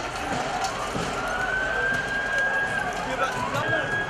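A police vehicle siren wailing in a slow rise and fall over the voices of a crowd in the street.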